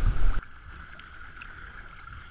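Wind buffeting the microphone, cut off abruptly about half a second in, then a quieter steady wash of water running along an RS400 sailing dinghy's hull.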